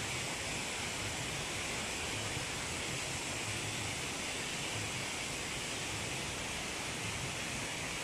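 Steady, even outdoor hiss with no distinct events, unchanging in level throughout.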